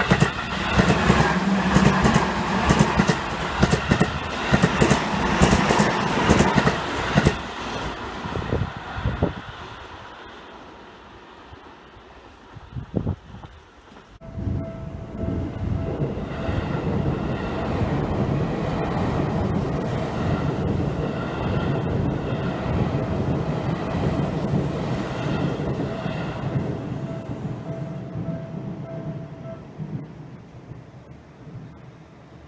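A Seibu 20000 series electric train passing close by, its wheels clattering over the rail joints and fading away over about ten seconds. After a break, a level-crossing alarm rings repeatedly over the steady running of another passing train and stops just before the end.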